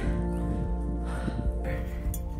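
Background music with held, steady notes.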